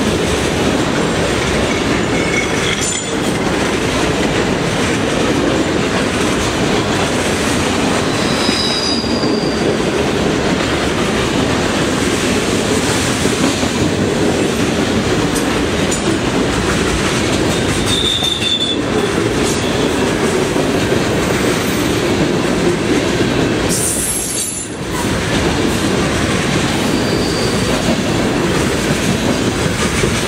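Freight cars, covered hoppers and then tank cars, rolling past close by: a steady heavy rumble of steel wheels on rail with clickety-clack over the joints. Short high-pitched wheel squeals come through a few times.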